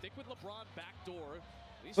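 NBA game broadcast playing quietly: a commentator's voice with arena noise and a basketball bouncing on the hardwood court.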